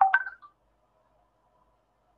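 A short electronic notification tone: a few clipped electronic pitches together, lasting about half a second at the start.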